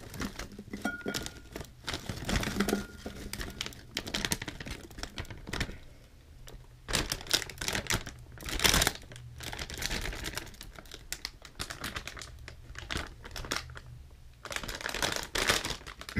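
Crinkling of a plastic Flamin' Hot Cheetos Puffs snack bag being tipped and shaken as the puffs are poured into a glass bowl. It comes in irregular bursts, about a second in, around the middle and near the end, with quieter gaps between.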